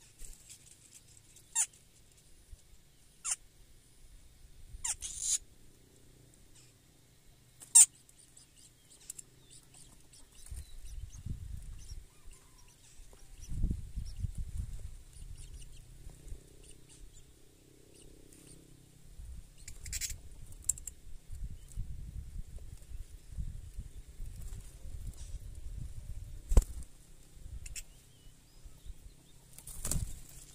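Shrike nestlings giving short, sharp high-pitched begging chirps, singly and a few seconds apart. A low rumble comes and goes from about ten seconds in.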